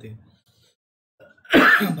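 A man clears his throat once, a short harsh burst about one and a half seconds in, after a brief pause in his speech.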